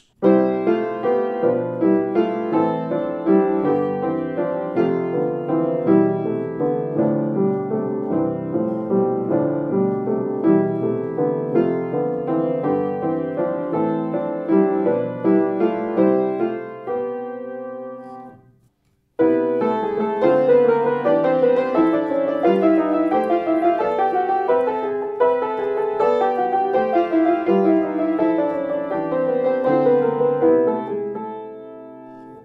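Upright piano played with both hands, running through a chord-progression exercise of major and minor triads in changing voicings. The first passage dies away about seventeen seconds in, a moment of silence follows, and a new passage starts.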